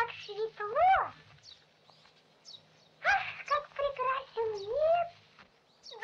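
Cartoon bird characters' voiced peeps and chirps, short squeaky calls with sliding pitch. One group comes in the first second and another from about three to five seconds in, with a faint steady low hum beneath.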